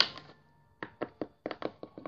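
Small plastic Littlest Pet Shop toy figure tapped on a tabletop: a quick run of about eight light taps in the second half.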